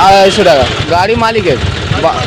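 A man speaking, with a steady low engine rumble from a vehicle underneath.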